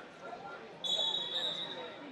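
A referee's whistle blown in one steady blast lasting about a second, starting just under a second in, over the chatter of a large hall.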